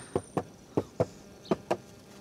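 Light taps with the fingers on the plastic inner door trim of a Daihatsu Ayla, about eight short taps at uneven spacing, sounding out a door fitted with glasswool sound-deadening. The owner finds the taps fairly muffled.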